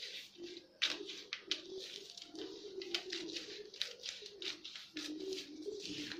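Scissors cutting through newspaper along a pattern line: a quick run of crisp snips and paper rustles, several a second, the sharpest about a second in.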